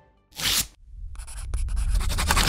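Logo-animation sound effect: a short whoosh about a third of a second in, then a scratchy scraping in rapid strokes that grows louder over a low rumble.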